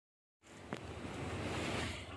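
Rushing, rumbling noise of air buffeting the microphone, starting abruptly about half a second in after silence and swelling toward the end, with one sharp click shortly after it starts.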